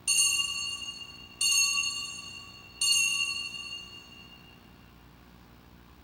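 An altar bell struck three times, about a second and a half apart, each strike ringing out with the same clear high tones and fading. It is rung as the priest receives communion from the chalice.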